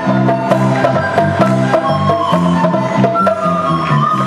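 A children's instrumental ensemble playing live: recorders and a violin carry a melody over held low notes, with a drum kit keeping a steady beat.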